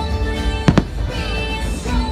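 Fireworks show music playing, with two sharp firework bangs about a tenth of a second apart, roughly three-quarters of a second in.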